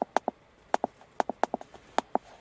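Keys on an Autoxscan RS830 Pro handheld diagnostic scanner clicking as they are pressed to step the cursor across its on-screen keyboard while typing in a diesel injector's correction code: a quick run of sharp clicks, often in close pairs.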